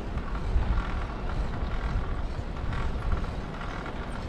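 Wind noise on the microphone of a camera riding on a moving bicycle: an uneven low rumble, with tyre noise from the paved cycle path.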